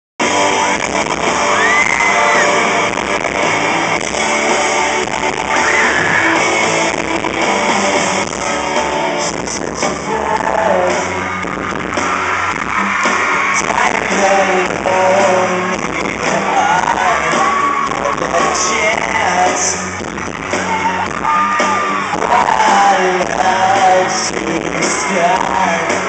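Live pop-rock band with electric guitars and drums and a male lead singer, heard from among the audience in a large venue, with fans yelling over the music.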